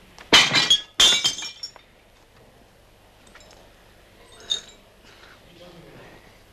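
Glass bottles and drinking glasses crashing to the floor and shattering as a tablecloth is yanked off a table. There are two loud crashes close together with glass tinkling after them, and a single clink a few seconds later.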